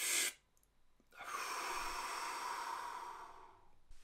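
A man's breathing: the second quick inhale of a double inhale at the very start, then about a second in one long, steady exhale lasting about two and a half seconds that fades away near the end. It is a double-inhale, long-exhale breath used to calm down and slow the heart rate.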